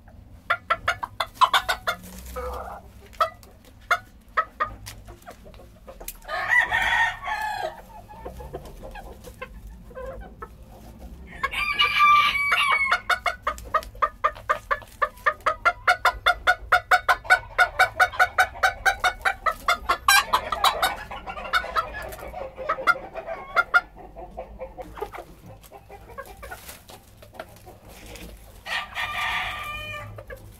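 Bantam chickens calling: a short crow about six seconds in, and a louder crow about twelve seconds in. It runs straight into some ten seconds of rapid, rhythmic clucking at about three a second, and another short crow comes near the end.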